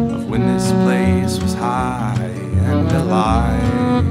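Folk trio playing an instrumental passage: strummed acoustic guitar, a bowed viola melody with wide vibrato, and low notes from a washtub bass.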